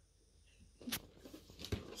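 Faint handling of a cardboard figure box: one short sharp sound about a second in, followed by a few small clicks as the box is turned over in the hands.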